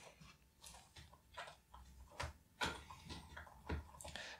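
A handful of faint, irregularly spaced clicks and taps: fingers handling the metal memory cover inside the empty battery bay of a white polycarbonate MacBook.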